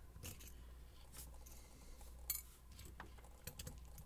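Small screwdriver turning out the screws of a pin-tumbler lock's tailpiece, with faint scattered metal clicks and ticks and one sharper click a little past halfway.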